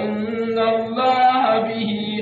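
A man's voice chanting a Quranic verse in the drawn-out melodic style of recitation, holding long steady notes that shift in pitch a few times.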